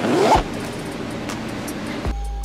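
Zipper on a nylon bag being pulled, one quick rising zip near the start, then handling noise of the bag.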